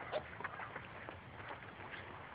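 Faint, steady outdoor background noise, with a brief snatch of voice right at the start.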